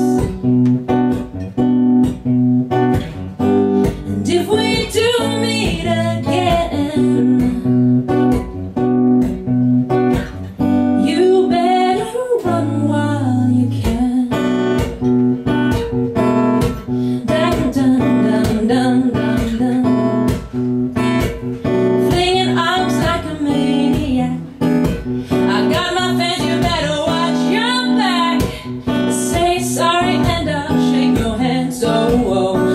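Acoustic guitar strummed steadily while a woman sings over it in phrases, with short gaps in the voice between lines.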